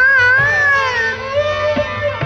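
Hindustani classical vocal in Raag Abhogi: a female voice sustains and oscillates a note with gamak-like wavers and slow glides, over a steady drone, with a few tabla strokes.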